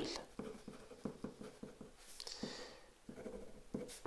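Ballpoint pen writing on paper: a run of faint, quick pen strokes as a word is written out.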